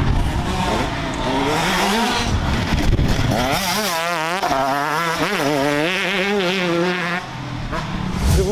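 125 cc two-stroke motocross bike's engine revving hard, its pitch swinging up and down quickly as the throttle is worked through the turns.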